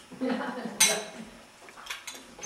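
Dishes and cutlery clinking as food is served at a dinner table, with one sharp clink a little under a second in and a lighter one near the end. A voice speaks briefly at the start.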